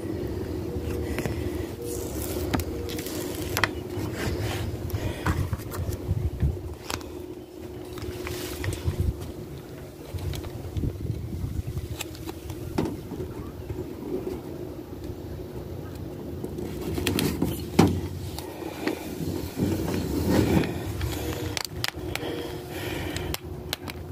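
Hands handling a vinyl sticker and pressing it onto a wooden boat wall: scattered rustles, scrapes and light taps over a steady low hum.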